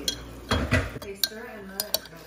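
A metal spoon stirring milk tea in a glass measuring jug, clinking against the glass several times in the second half.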